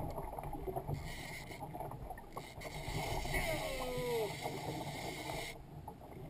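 Wind rumbling on an action-camera microphone over water sloshing against a fishing kayak's hull. A short voice-like sound glides in pitch about three to four seconds in.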